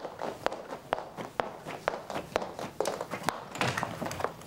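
A woman's footsteps on a hard wooden floor: sharp, evenly spaced clicks of shoes at about two steps a second as she walks across a room.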